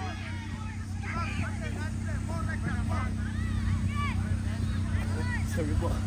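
Many overlapping voices of players and spectators shouting and calling across a football pitch, over a steady low rumble.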